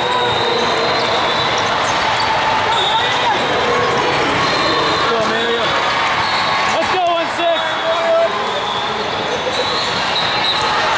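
Busy multi-court volleyball hall: many overlapping voices and shouts, with volleyballs thudding on hardwood court floors and being struck on the surrounding courts.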